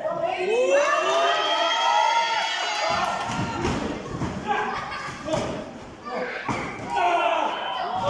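Spectators shouting and yelling over a wrestling match; from about three seconds in, a series of heavy thuds as wrestlers collide and land on the ring canvas, under continued crowd shouting.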